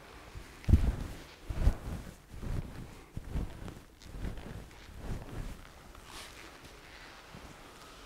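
Soft low thumps and shuffles from people moving through a standing stretch on a concrete floor, about one a second, dying away about five seconds in.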